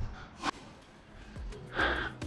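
A short, sharp intake of breath about half a second in, then low room tone; a voice begins to speak near the end.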